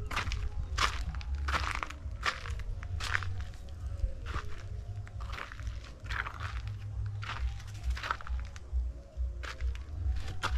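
Footsteps crunching on dry ground and litter, roughly one step a second, with wind rumbling on the microphone.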